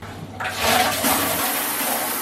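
Overhead rainfall shower head turned on, water spraying down onto a tiled shower floor. It comes up to a full, steady hiss about half a second in.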